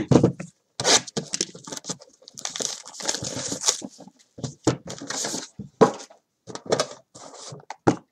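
A sealed trading-card box being unwrapped and opened by hand: irregular tearing and crinkling of its wrapping, with scattered knocks of cardboard on the table.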